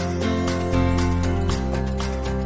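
Television programme's opening theme music: sustained pitched notes over a steady beat, the bass notes changing twice.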